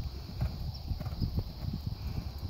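Hoofbeats of a horse cantering on a sand arena: a quick, repeating run of soft low thuds in the horse's stride rhythm.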